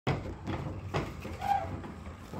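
Soft knocks and clicks, roughly two a second, from a Smith & Barnes player piano's mechanism as the paper roll starts to turn, before any notes sound.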